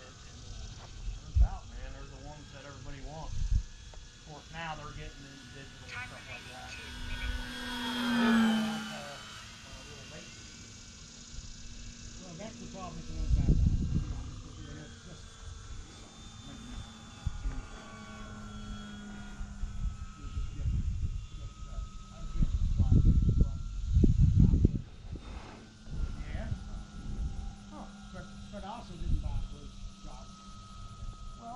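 Electric motor and propeller of a small radio-controlled Pitts S-1S biplane whining as it flies, with a louder pass about eight seconds in where the pitch drops. Bursts of low rumble come around thirteen seconds and again between twenty-two and twenty-five seconds.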